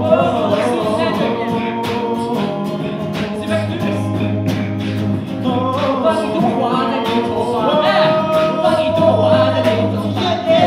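Live band performing: several voices singing held harmonies over acoustic guitar and a steady low bass, with a regular percussive beat.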